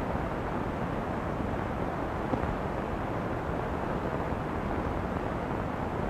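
Steady low background noise, even throughout, with no distinct sounds in it.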